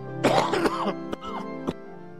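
Church organ holding sustained chords to introduce a hymn, while a person coughs and clears their throat loudly over it, twice, in the first second and a half.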